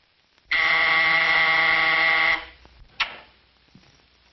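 Electric office buzzer sounding one steady buzz of about two seconds, followed about half a second later by a single sharp click.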